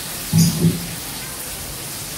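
A person's short, low voiced sound with two quick pulses, about a third of a second in, over a steady background hiss.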